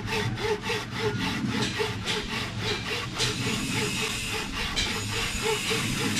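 Two-man wooden frame saw cutting through a log by hand, in steady back-and-forth rasping strokes at about three a second. The strokes grow less distinct after about three seconds.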